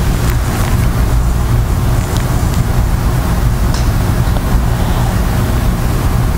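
Steady low rumbling noise with a few faint clicks over it.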